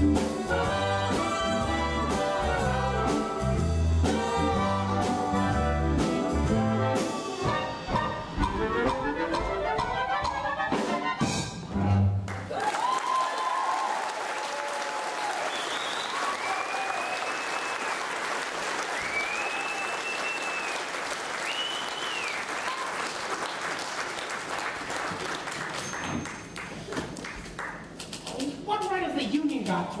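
Live big band with brass playing a jazzy dance number that ends about twelve seconds in. The audience then applauds with whoops, the applause fading after about a dozen seconds.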